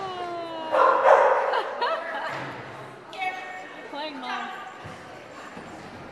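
A small dog barking at intervals as it runs an agility course, with the loudest bark about a second in.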